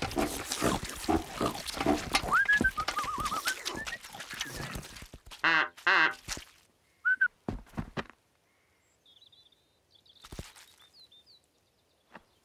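Cartoon pigs gobbling slop noisily for about five seconds, with a short warbling whistle in the middle. Loud grunting, snorting laughter follows, then it goes quiet apart from faint high chirps.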